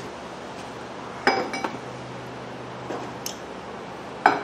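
Metal tools and parts clinking as they are handled: one sharp, ringing metal clink about a second in, then a few lighter clicks and taps.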